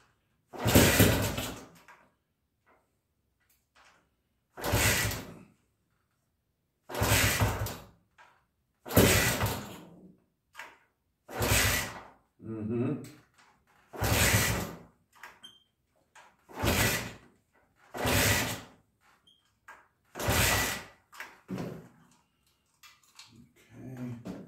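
1969 Honda CT90's small single-cylinder four-stroke engine being kick-started over and over, about nine kicks roughly two seconds apart, each a short burst of cranking that dies away without the engine catching. It won't run because the carburetor is starved of fuel.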